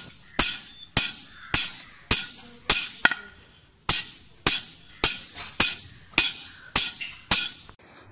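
A hammer striking a thin steel rod laid on a steel channel, about thirteen blows at a steady pace of roughly two a second, with a short pause a little before the middle. Each blow is a sharp metallic clank that rings briefly.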